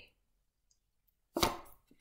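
Near silence, then a single sharp tap about one and a half seconds in: a tarot card put down on the table.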